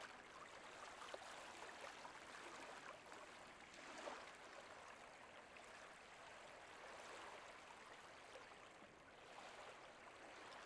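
Near silence: a faint, steady hiss of outdoor background noise, swelling slightly about four seconds in.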